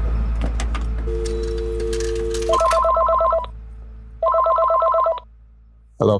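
Telephone ringing: a steady two-note tone for about two and a half seconds, then two trilling rings of about a second each. A low rumble runs underneath. The ring signals the incoming prison collect call.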